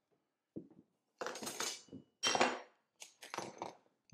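Small hand tools (pencils, a square, a pocket rule) being set down one after another on a workbench top: a run of about four clinks and clatters, the loudest in the middle.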